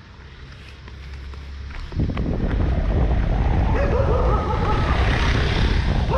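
Wind buffeting an action camera's microphone, starting about two seconds in and staying loud, with a dog barking over it in the second half.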